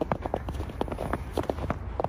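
Footsteps crunching on a snow-covered trail, a quick series of short crunches.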